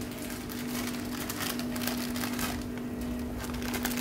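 Plastic bag of dry noodles crinkling and rustling in the hands as the noodles are shaken out over the pot, with clusters of crackling about one and a half seconds in and again near the end. A steady low hum runs underneath.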